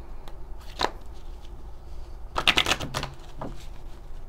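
A deck of oracle cards being shuffled by hand: one sharp snap about a second in, then a quick flurry of riffling a little past halfway.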